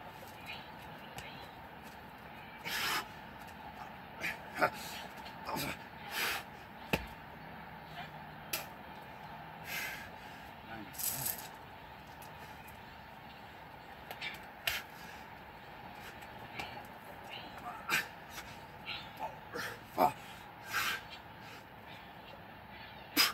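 A man's hard, heavy breaths in short bursts every second or two, with a few sharp slaps, from exertion during six-pump burpees: gloved hands meeting the concrete.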